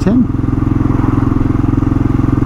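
Kawasaki KLR 650's single-cylinder four-stroke engine running at a steady speed while riding, with an even, unchanging note.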